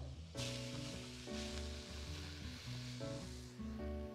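Minced onion sizzling in hot melted butter in a frying pan. The sizzle starts suddenly about half a second in as the onion goes into the fat, and dies down near the end.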